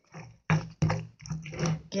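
Stone pestle (tejolote) pounding and grinding softened, fried tomatoes in a stone molcajete, several quick strokes in a row.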